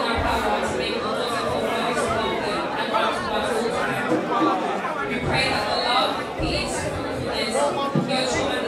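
A woman's voice through a microphone public-address system, over the chatter of a crowd in a large hall.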